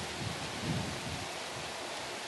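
Steady hiss of outdoor background noise in the woods, with a few faint low rumbles in the middle.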